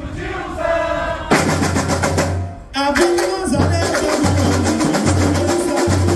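Live samba music: singing over a bateria of bass drums and percussion. The full band comes in about a second in, drops out briefly near three seconds, then carries on with a steady repeating low drum beat.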